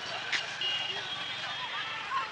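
Outdoor street ambience: a steady hum of distant traffic with faint far-off voices. A brief click comes about a third of a second in, and a short, thin high tone sounds for under a second.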